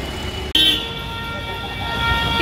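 A vehicle horn held in one steady tone for about a second and a half, starting suddenly about half a second in, over the low rumble of street traffic.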